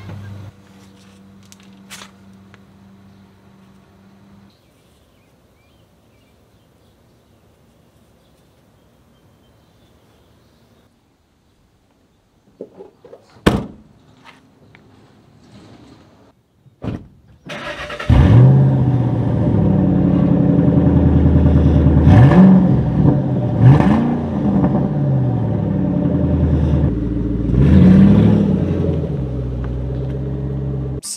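Ford Mustang GT's V8 engine starting after a couple of sharp clicks, running loudly and being revved up three times.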